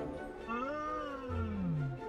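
Soft background music with a wordless, voice-like sound over it, sliding up about half a second in and then falling steadily in pitch until the end, a cartoon character's reply without words.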